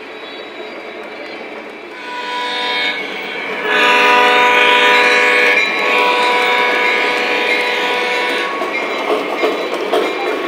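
Lionel GP35 model diesel locomotive's electronic horn sounding a short blast about two seconds in, then a louder long blast of about five seconds, over the rolling rumble and clatter of the train's wheels on the track.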